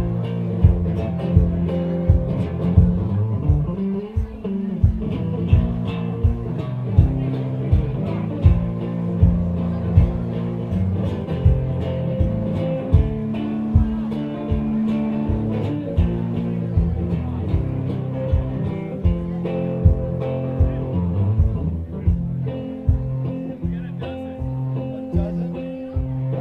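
Live blues guitar playing an instrumental stretch over a steady low thump on the beat, about three thumps every two seconds.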